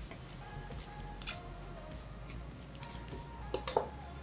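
A chef's knife cutting through the tough core and stalks of a raw cauliflower, giving a series of irregular crisp crunches and snaps. Faint background music underneath.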